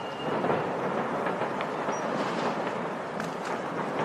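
Steady distant rumbling noise with a few faint pops, getting a little louder about half a second in.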